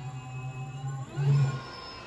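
Rear hub motor of a 72V electric dirt bike spinning the lifted wheel with no load, giving a steady electric whine over a low hum. About a second in, the whine rises in pitch as the wheel speeds up, then holds. The motor is running again on its original controller now that a shorted phase wire has been repaired.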